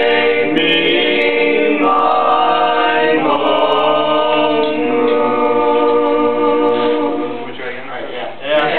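A group of teenage boys singing a cappella in barbershop-style close harmony: long held chords that shift a few times, then fade away near the end.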